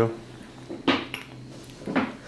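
A sharp clink about a second in and a fainter click just after, over a steady low hum inside a lift car.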